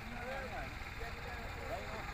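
Faint voices of people talking in the background over a steady low rumble.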